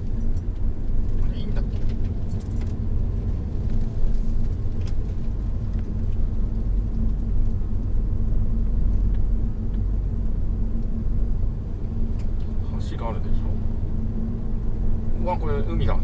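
Steady engine and road noise inside the cabin of a moving Honda Odyssey RB3 minivan with a 2.4-litre four-cylinder engine: a low rumble with a steady hum, and a few faint clicks.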